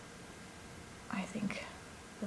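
A soft, almost whispered voice murmuring a few words about a second in, over quiet room tone.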